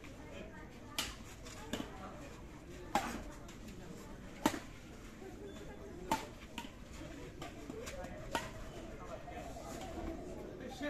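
Badminton rally: rackets strike the shuttlecock with sharp cracks roughly every second and a half, five clear hits with the loudest about halfway through, over murmured background chatter.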